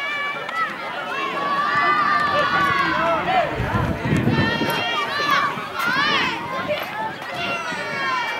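Many children's high-pitched voices calling and shouting over one another at once.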